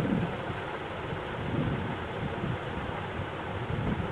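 Steady background noise, a low hiss and rumble with no speech.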